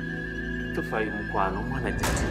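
Background music with steady held tones, and in the second half a person crying out in a few wavering, bending wails.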